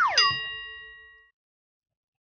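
Edited-in sound effect: a quick falling swoop into a bright bell-like ding that rings and fades over about a second.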